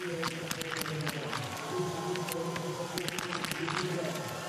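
Small-bore .22 biathlon rifles firing on the range: sharp cracks from many shooters, irregular and several a second. Under them runs stadium music with long held tones.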